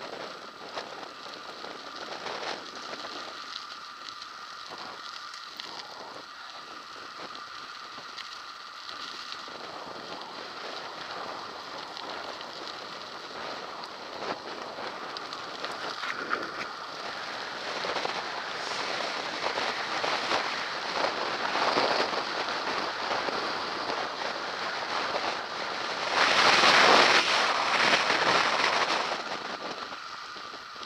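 Mountain bike tyres rolling on coarse tarmac at speed, with wind rushing over a head-mounted action camera's microphone: a continuous crackly noise that grows louder in the second half and is loudest for a few seconds near the end.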